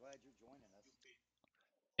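Near silence, apart from a faint voice in about the first second.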